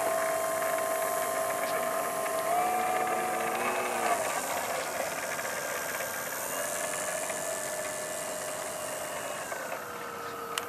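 Turnigy 4260 brushless electric motor and propeller of a radio-controlled P-47 model plane whining at taxi throttle. The pitch steps up about two and a half seconds in, shifts again about four seconds in, then holds lower and steady.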